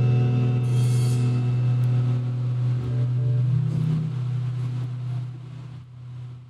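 A small band's closing chord ringing out: a held low electric bass note under a sustained electric guitar chord, with a cymbal crash about a second in. The chord dies away over the last couple of seconds.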